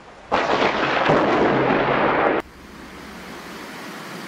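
Close thunder from a nearby lightning strike: a sudden loud crack about a third of a second in, rumbling for about two seconds, then cut off abruptly. A quieter steady hiss follows.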